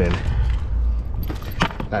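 A hand rummaging among things in a car trunk: a few light knocks and clicks in the second half, over a steady low rumble.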